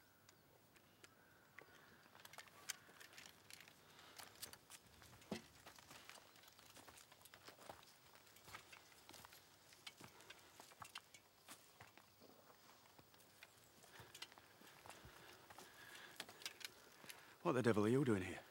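Faint footsteps and scattered light clicks and rustles of soldiers' kit and muskets, with a man's voice starting near the end.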